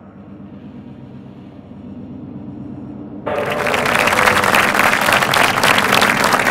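A low, steady musical drone swells slowly, then about three seconds in, audience applause breaks out suddenly and goes on loudly.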